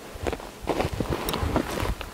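Footsteps and rustling in dry brush and rocks: irregular scuffs and thuds.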